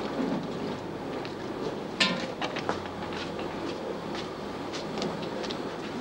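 Industrial laundry machines running: a steady mechanical noise, with a sharp knock about two seconds in and several lighter knocks after it.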